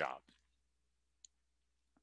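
A man's voice finishing a word, then near silence with a faint sharp click about a second in and another at the very end.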